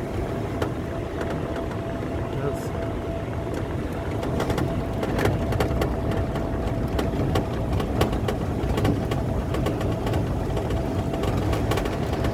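Golf cart driving along a paved path: a steady low rumble from the ride, with a thin steady whine that stops near the end and scattered small rattles and knocks.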